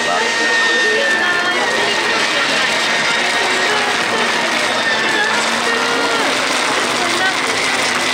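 Vitamix blender running at high speed with its Aer disc aerating container, a steady rushing motor sound with a thin whine, whipping a lime and coconut drink into froth.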